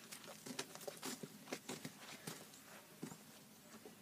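Faint footsteps on dry grass: soft, irregular clicks and crunches a few times a second, dying away in the last second.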